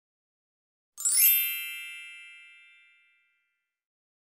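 A bright, bell-like chime: a quick upward run of high notes about a second in, then the chord rings and fades away over about two seconds.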